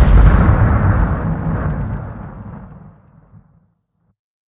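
Explosion sound effect dying away: a deep, noisy blast that fades steadily to nothing over about three and a half seconds.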